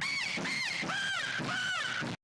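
A run of about five short, pitched calls, each rising and then falling in pitch, starting suddenly and following one another evenly.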